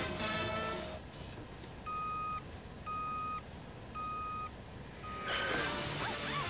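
Cartoon soundtrack: music breaks off, and then a short even-pitched electronic beep sounds four times, about once a second. Each of the first three lasts about half a second and the fourth is cut short as the music comes back near the end.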